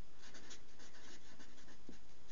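Felt-tip marker writing on paper: a quick, uneven run of short, faint scratching strokes as letters are drawn.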